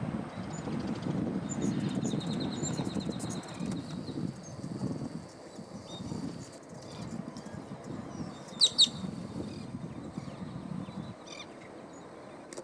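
Songbird calls outdoors over a low background rumble: a quick run of high notes a few seconds in, then two loud, sharp chirps in quick succession a little past the middle.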